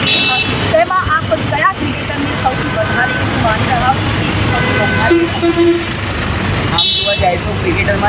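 Road traffic running steadily under people talking, with short vehicle horn toots at the start and again about seven seconds in.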